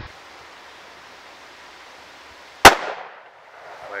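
A single rifle shot about two and a half seconds in: one sharp crack with a short fading tail. It is a test shot to check that a rifle which misfired now fires.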